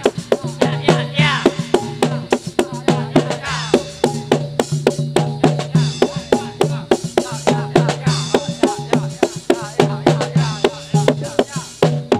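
Live Javanese gamelan music for a warok dance: drums beating quick, sharp strokes over a steady repeating pattern of pitched metallophone notes.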